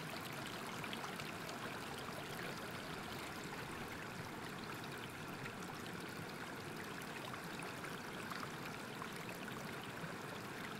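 Flowing water rushing steadily and faintly, like a stream or small waterfall.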